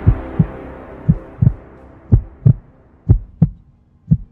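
Trailer-style heartbeat sound effect: pairs of short low thumps, lub-dub, about once a second, over the fading tail of a low music drone.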